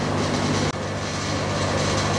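Steady low mechanical hum under a wash of noise, from background machinery running continuously, with a slight drop in level less than a second in.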